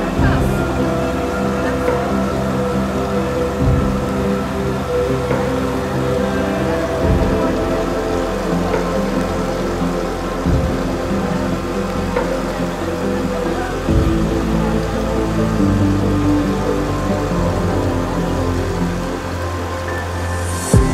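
Background music of sustained chords that change about every three and a half seconds.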